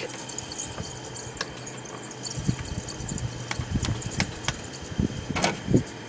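Plastic clicks, taps and a few light knocks from hands handling the vent louvers and control-panel cover of a through-wall hotel heating and air-conditioning unit, over a steady low hum.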